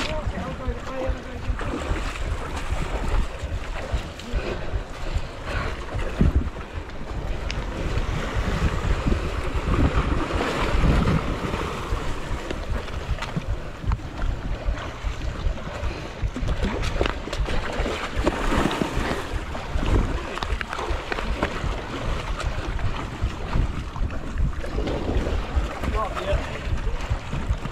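Wind buffeting the microphone over sea water lapping and sloshing against shoreline rocks.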